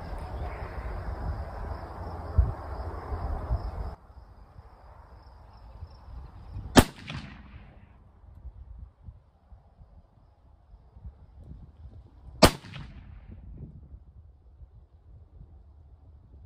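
Two shots from a Thompson Center Compass rifle in .308, about six seconds apart, each a sharp crack with a short echo trailing off. A low rushing noise runs under the first few seconds and cuts off suddenly about four seconds in.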